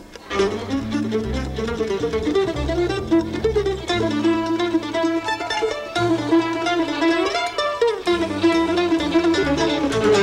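A live acoustic string band plays a fast instrumental tune. A mandolin picks a busy melody over a stepping bass line, with drums.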